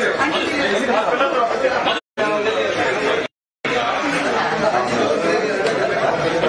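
Many people talking at once in a crowded room: dense overlapping chatter. The sound cuts out completely twice, briefly about two seconds in and again for a moment about three and a half seconds in.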